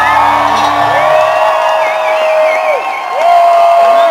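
Live rock band music with long held notes, while the crowd cheers and whoops.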